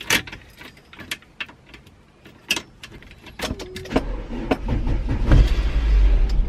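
Ignition key clicking in a Volkswagen van's lock a few times. About four seconds in, the starter begins cranking the engine with a loud, low rumble that builds and does not catch: the newly fitted relay 30 has not cured the van's no-start.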